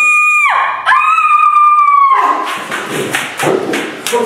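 Two long, high-pitched screams, each held at a steady pitch, followed from about two seconds in by a jumble of thuds and scuffling noise.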